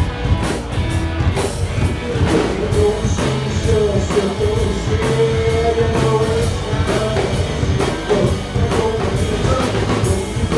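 Live rock and roll band playing: upright double bass, electric guitar and drum kit, the drums keeping a steady beat.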